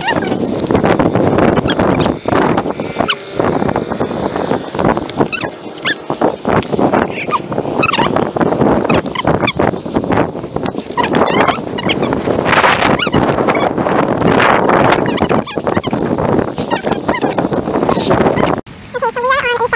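Wind buffeting the microphone of a hand-held camera, with rubbing and knocking handling noise as it is carried along on a walk.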